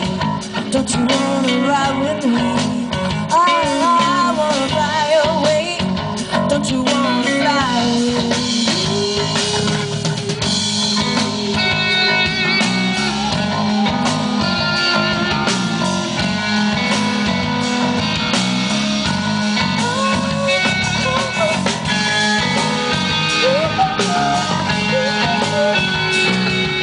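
Live rock band playing: electric guitar, electric bass and drum kit together, with a wavering, bending lead line over the first several seconds and steadier held notes after.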